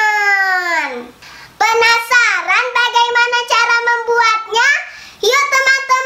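A young girl singing in a high voice. A long note slides down in pitch, then after a short pause comes a run of held, sung notes.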